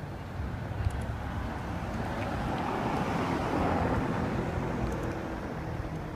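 A white Ferrari driving past at low street speed, its engine and tyre sound swelling to a peak a little past halfway and easing off as it moves away.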